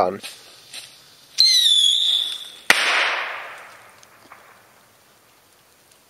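Small Demon whistle-and-bang rocket (fusée sifflet pétard): a thin, not very loud whistle, falling slightly in pitch, starts about a second and a half in and ends in one sharp, loud bang about a second later. The bang's echo dies away over about two seconds.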